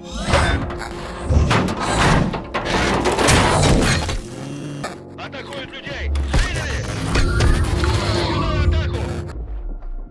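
Film action soundtrack: a run of heavy crashes and shattering impacts from an armoured-suit fight among wrecked cars, mixed over dramatic music and shouting voices.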